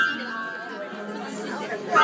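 Upright piano keys banged with the flat of small hands. A loud cluster of notes is struck at the start and rings and fades, and another cluster is struck near the end, over children's chatter.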